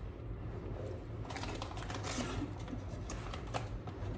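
Light handling noise: soft, scattered clicks and taps of fingers and small plastic pieces on a plastic chocolate mould as marshmallows are pressed on, starting about a second in.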